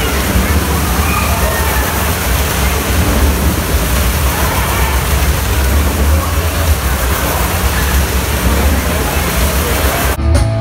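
Engine of a vehicle running hard as it circles the vertical wooden wall of a Wall of Death drum: a loud, steady rumble with a heavy low end, mixed with crowd voices.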